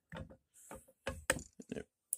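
A few short, sharp clicks and knocks as a one-ton arbor press ram drives a steel-rod punch down through a 3D-printed die, pushing a spent .38 S&W blank out of a 40mm case.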